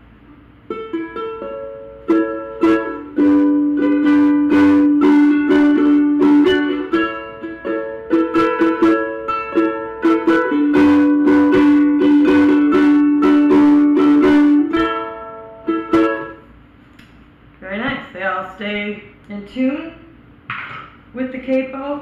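Vangoa ukulele strung with Aquila strings, played with a metal capo clamped on the neck: a short run of strummed chords with ringing notes for about fifteen seconds, then it stops.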